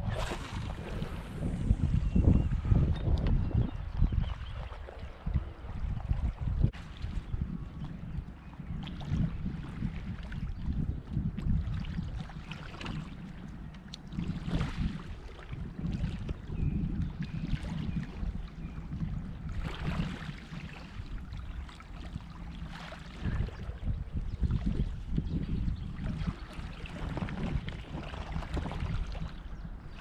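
Wind buffeting an action camera's microphone in an uneven, gusting low rumble, with small waves lapping at a shingle shore.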